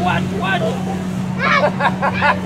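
Battery-powered blower fan of an inflatable T-rex costume running with a steady hum, with voices over it.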